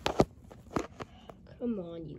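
Four sharp clicks in two close pairs, the second one the loudest, followed near the end by a short, falling vocal sound from a person.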